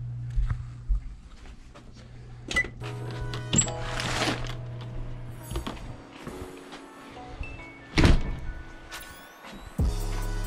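Music with scattered knocks and thuds and a loud hit about eight seconds in, over a steady low hum that stops about halfway through.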